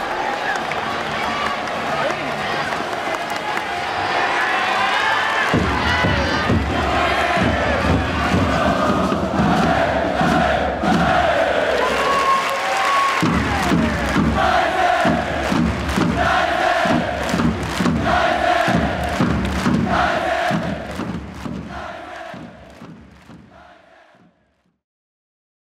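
Football stadium crowd chanting and singing together, joined about halfway through by a regular pounding beat under the chant; the sound fades out near the end.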